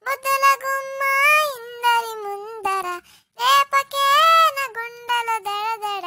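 A high, childlike voice singing an unaccompanied tune in long held notes that slide up and down, with a short break about three seconds in.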